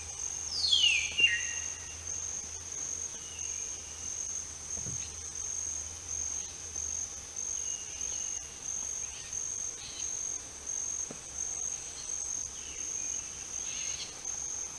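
A forest insect, cricket-like, calls continuously as a high-pitched trill pulsing about twice a second. About a second in, a single louder whistled call falls steeply in pitch, and a few faint short calls follow later.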